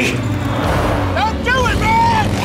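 A steady low rumble, with a short run of high, voice-like cries that rise and fall several times from about halfway through.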